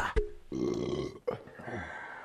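A man's short, low, rough vocal noise, not words, about half a second in, followed by fainter short vocal sounds.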